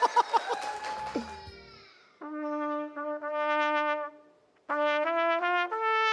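A trumpet played live: after some clapping dies away in the first second, it sounds two held notes, pauses briefly, then plays a short run of notes stepping upward in pitch.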